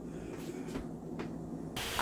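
Quiet room tone: a faint steady low hum with a few soft clicks, and a brief rustle near the end.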